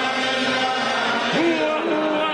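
Voices singing a melodic religious chant together, the sung lines wavering and overlapping; one voice slides up in pitch a little past halfway.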